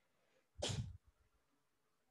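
A single short, breathy burst from a person, close on a headset microphone, lasting under half a second about half a second in.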